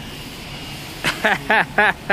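A man laughing: four short ha's starting about a second in, over faint steady background noise.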